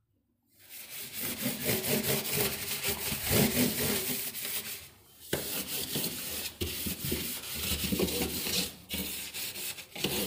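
A cloth rubbing and wiping the plastic inside walls of an emptied refrigerator. The rough, scrubbing noise starts about a second in and goes on in long strokes with scattered small knocks. It breaks briefly midway with a sharp click.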